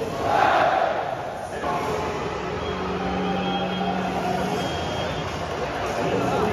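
Football stadium crowd noise in a large, echoing stand, with voices over the public-address system. The crowd swells loudly for the first second and a half, then settles to a steadier din.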